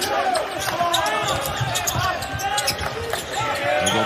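A basketball dribbled on a hardwood court during live play, with sneakers squeaking and players calling out in the arena.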